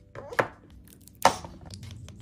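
Two sharp plastic clacks of makeup tubes and caps being handled and set down, one less than half a second in and a louder one a little past the middle.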